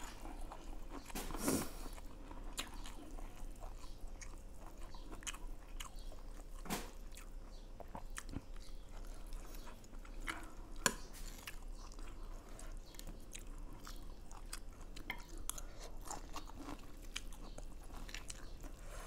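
Close-up chewing and biting of a mouthful of dry noodles, with scattered short clicks of chopsticks and a spoon against the plate, a few sharper ones standing out.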